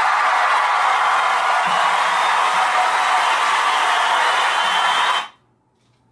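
Steady, loud hissing noise that lasts about five seconds and cuts off suddenly.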